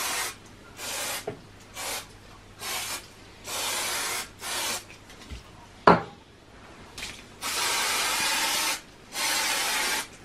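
Aerosol can of spray adhesive hissing in about eight separate bursts, short at first, then two longer sprays near the end. A single sharp knock about six seconds in is the loudest sound.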